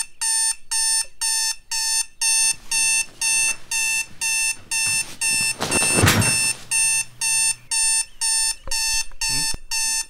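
Digital alarm clock beeping: a steady run of rapid electronic beeps, about two to three a second. About six seconds in, a brief louder burst of rustling noise rises over the beeps.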